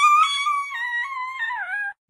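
A small dog howling along to a sung tune: one long, high, wavering howl that drops in pitch near the end and then stops.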